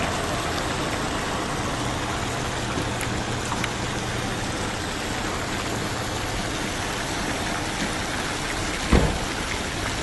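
Small ornamental fountain, its jets splashing steadily into a shallow basin, over a low steady hum. A single thump comes about nine seconds in.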